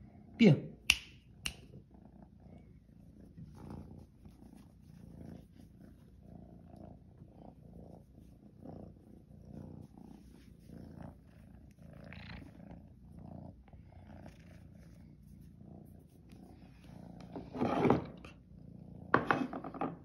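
Young tabby cat purring steadily while being stroked, a low pulsing rumble, with a couple of sharp clicks about a second in and louder sounds near the end.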